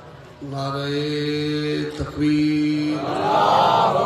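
A man's voice chanting into a microphone over a PA: long held notes starting about half a second in, a brief break around the middle, then a louder note that swells and bends near the end.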